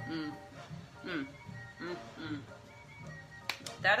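A woman humming appreciative 'mm' sounds in rising and falling, sung-like notes while chewing food, with music underneath.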